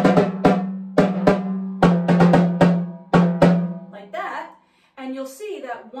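Timbales struck on their heads with wooden drumsticks: about a dozen sharp hits in the first three and a half seconds, each ringing on with a steady drum tone. The playing stops and a woman's voice takes over near the end.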